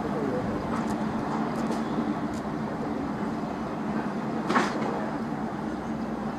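Steady low background rumble with a faint hum, and one short sharp knock about four and a half seconds in.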